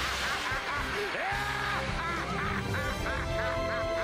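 Anime soundtrack music with a man's cartoonish laugh over the second half, a quick run of short 'ha' syllables that sounds almost like 'ze ha ha ha'.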